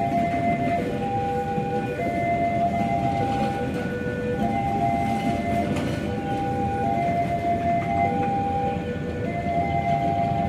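A passenger train rolling slowly past with a steady low rumble. Over it runs a simple melody of held notes that change about once or twice a second.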